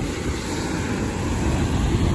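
Wind buffeting the microphone in an uneven low rumble, over the steady rush of surf breaking on a sandy shore.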